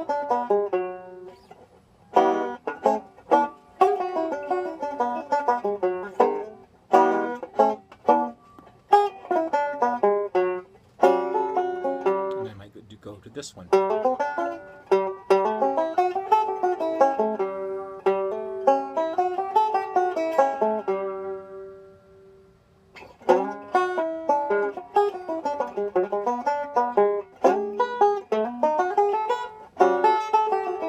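Five-string resonator banjo played solo: runs of single picked notes improvising a blues line over 12-bar blues changes in E, using dominant pentatonic shapes. There are brief pauses about two, thirteen and twenty-two seconds in.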